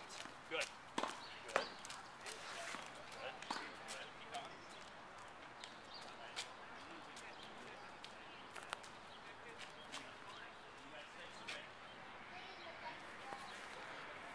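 Faint outdoor background with scattered light clicks and taps, thickest in the first few seconds, and faint distant voices early on.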